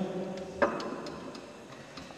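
A pause in a man's speech in a church: the echo of his voice dies away, then one sharp click about half a second in, followed by a few faint ticks.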